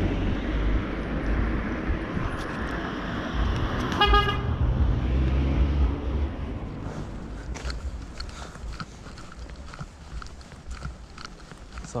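A car running close by with traffic rumble, and a short car horn toot about four seconds in. After about six seconds the rumble fades and footsteps tap on the pavement.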